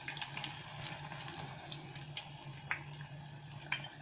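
Battered artichoke pieces frying in a pot of hot oil: a soft, steady sizzle with a few small pops.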